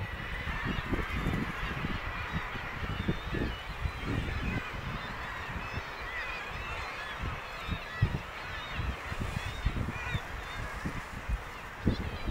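Seabird colony calling: a dense, continuous chorus of short overlapping calls from many birds, with irregular low rumbling gusts of wind on the microphone.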